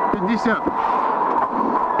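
Rally car engine running hard with gravel and road noise, heard inside the cabin at speed on a loose surface; it goes on steadily after a short pace-note call.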